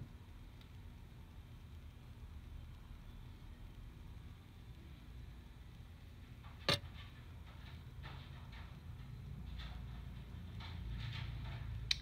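Quiet handling sounds of hand beading, as the needle and thread are drawn through small glass seed beads on a pendant. There is one sharp click about seven seconds in, then faint scratchy rustles, over a low steady hum.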